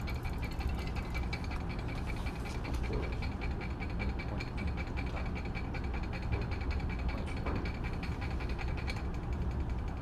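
Magnetic stirrer running steadily, with a low hum and a fast, even ticking as the stir bar spins in the beaker during the titration.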